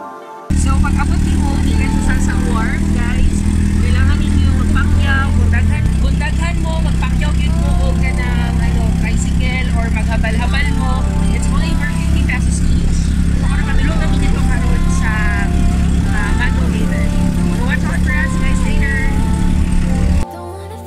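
Small motorcycle engine of a passenger tricycle running under way, heard from inside the sidecar cab as a loud, steady drone whose note changes about six seconds in. People's voices chatter over it.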